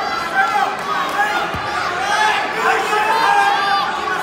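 Spectators in a gym calling out over one another, a steady mix of many voices.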